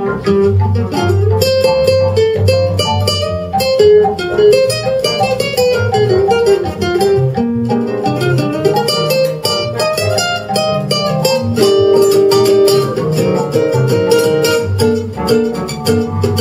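Live jazz ensemble in an instrumental break: an acoustic guitar plays a quick solo line over piano and upright bass accompaniment.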